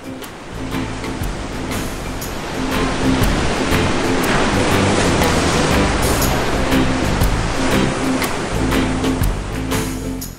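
Background music over a rushing ocean-surf sound effect that builds over the first few seconds and eases near the end.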